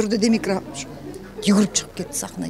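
A woman's voice making a few low, wavering sounds without words, then a pause, and a short vocal sound again about one and a half seconds in.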